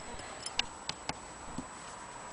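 A few light, irregular clicks and ticks from an antique Willcox & Gibbs hand-crank sewing machine as its handwheel is handled.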